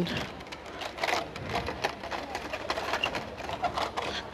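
Plastic blister packs of die-cast toy cars clicking and crinkling irregularly as they are handled and pushed aside on a store peg.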